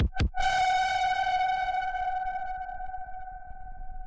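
Electronic music: a single held synthesizer note with a bright stack of overtones, briefly chopped with a low drum hit right at the start, then left sustaining and slowly fading away.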